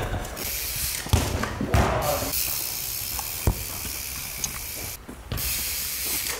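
Trials bike rolling over thick artificial-turf carpet: a steady hiss from the tyres and coasting freewheel, with a few dull thumps.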